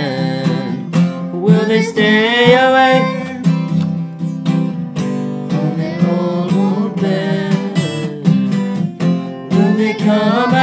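Acoustic guitar strummed as accompaniment, with voices singing long held notes together that come and go over the chords.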